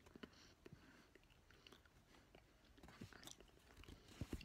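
Very faint chewing: soft, scattered mouth clicks from a person chewing a bite of chicken quesadilla, near silence otherwise.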